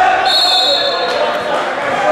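Referee's whistle blown once, a shrill steady tone held for about a second, stopping the bout, over the chatter of a hall crowd.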